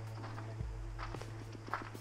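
Footsteps with a few faint clicks, over a steady low hum.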